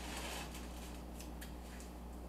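A few faint, light clicks and scrapes of a spoon in a cast-iron skillet of thick pot pie filling, over a steady low hum.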